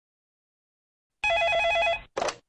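An electronic telephone ringer trilling with a fast warbling tone. It starts about a second in and is cut off after less than a second as the call is answered.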